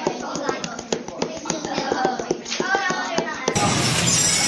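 Rapid, uneven taps of a point being stabbed back and forth between the spread fingers of a hand lying on a folder on a tabletop, several taps a second, with voices talking over it. Music cuts in near the end.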